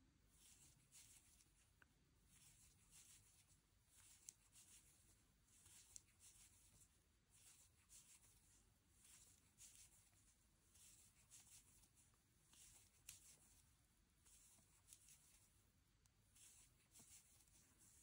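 Near silence with faint, regular soft rustles, about two a second, and a few tiny clicks: a metal crochet hook drawing cotton yarn through single-crochet stitches.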